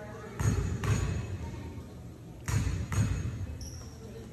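Basketball dribbled on a hardwood gym floor during a free-throw routine: four bounces in two pairs, the pairs about two seconds apart.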